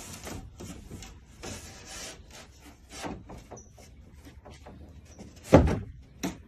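A wooden board being shifted and bumped against wooden framing: scraping, rubbing and light knocks, then one loud thud about five and a half seconds in.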